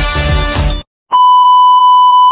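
Upbeat music that cuts off abruptly under a second in; after a brief silence, a loud, steady, high-pitched test-tone beep, the kind played over television colour bars, which runs on past the end.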